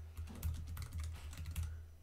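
Computer keyboard being typed on: a quick, uneven run of keystroke clicks, over a steady low hum.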